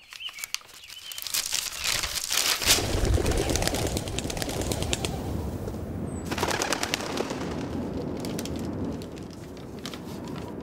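A large sheet of paper crinkling and crackling as it is unfolded, in two spells of rapid crackles, the first in the opening three seconds and the second around six and a half seconds in, over a steady rushing noise.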